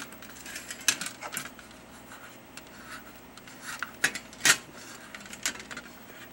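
Metal electrode plates of a dismantled HHO cell being handled: scattered light metallic clicks and taps, with a louder clink about four and a half seconds in, and some rubbing of fingers on the plate surfaces.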